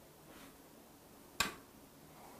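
A board eraser wiping a chalkboard faintly, with one sharp click about one and a half seconds in.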